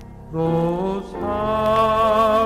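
Southern gospel male vocal group singing in harmony over instrumental backing, coming in louder about a third of a second in with notes that slide up and then hold.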